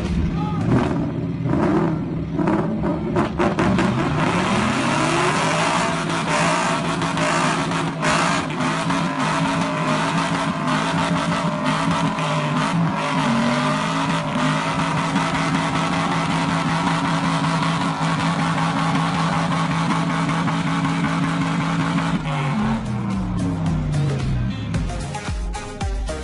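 Two sports cars, one a Corvette, doing burnouts in a tug of war. Their engines rev up a few seconds in and are held at high revs with tyres squealing and spinning, then the revs drop off near the end.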